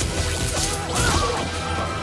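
Film soundtrack: a magic-blast sound effect with crashing over music, loud and dense, cutting off suddenly at the end.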